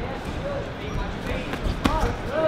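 Boxing glove punch landing with one sharp smack near the end, over spectators talking around the ring.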